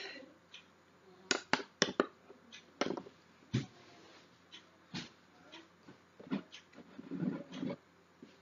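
A spoon and mug being handled: a string of short, sharp clicks and clinks, several close together about a second in and more scattered after, with a softer muffled shuffling stretch near the end.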